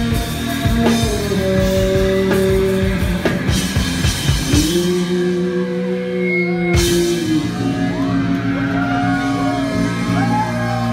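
Nu-metal band playing live with distorted guitar, bass and drums. The drums drop out about five seconds in under a held chord. A single full-band hit lands near seven seconds, and the chord rings on, wavering, as the song winds down.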